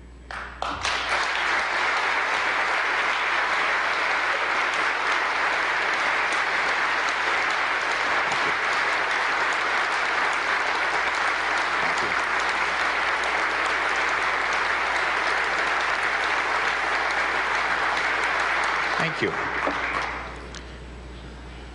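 Large audience of legislators and guests applauding steadily. The clapping starts about a second in and dies away near the end.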